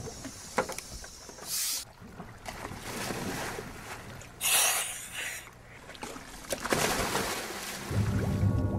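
Water and wind noise around a moving boat, with short bursts of hiss about a second and a half in and a louder one around four and a half seconds.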